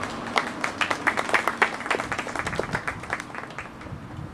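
A small audience clapping, the applause thinning out and dying away near the end.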